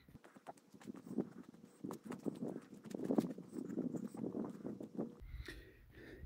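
Footsteps walking over dirt ground: an uneven run of short scuffs and clicks.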